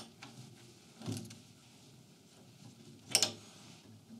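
Quiet handling sounds at a laser engraver's belt tensioner on its aluminium rail: a light click at the start, a soft knock about a second in, and a brief scrape about three seconds in, as the belt tension is set with a small hex key.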